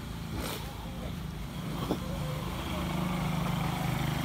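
A motor engine running with a steady low hum that grows louder in the second half, with a single sharp click about two seconds in.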